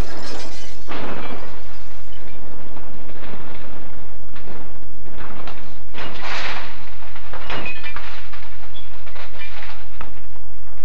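Car crash-test impact: bursts of crunching and shattering, the loudest about a second in and again around six seconds in, over a steady low hum.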